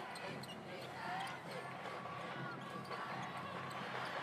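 Basketball game sound on a hardwood court: a ball bouncing and sneakers squeaking in short chirps over steady crowd chatter in a large arena.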